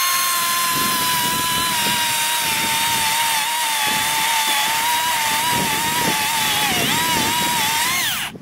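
Makita XCU03PT1 36-volt cordless chainsaw's electric motor running at full speed with a steady high whine while its chain cuts down through a small tree stump. The pitch sags a little under the load of the cut and rises again near the end as the chain breaks through.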